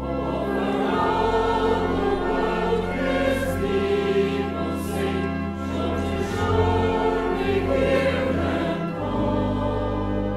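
A choir singing a hymn over a sustained accompaniment, with long held low notes underneath the voices.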